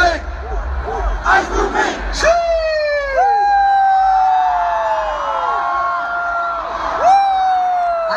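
Large festival crowd cheering and yelling between songs, with several long wails that fall in pitch over it, starting about two seconds in and again near the end.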